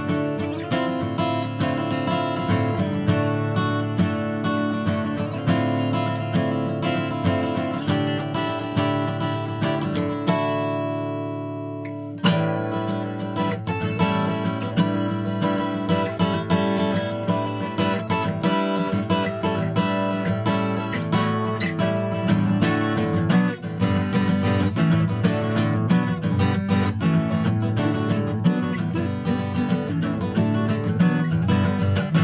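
Martin D-18 dreadnought acoustic guitar, with a spruce top and mahogany back and sides, strummed in steady rhythmic chords. About a third of the way in, a chord is left to ring and fade for about two seconds before the strumming starts again.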